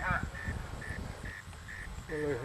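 An electronic beeper giving short, high, evenly spaced beeps, about two a second, faint over a low rumble.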